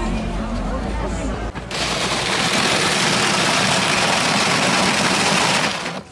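Electric ice shaver running and shaving ice for shave ice: a loud, even grinding hiss that starts suddenly about two seconds in, lasts about four seconds, and cuts off just before the end.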